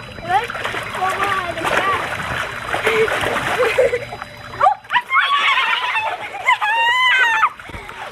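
Water splashing and sloshing as several girls wade and scramble in a shallow inflatable pool, with excited high-pitched yelling and shrieks over it, the voices strongest in the second half.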